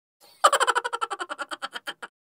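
A sound effect under the bloopers title card: a quick run of short pitched pulses, about a dozen a second, that starts about half a second in and slows and fades over about a second and a half.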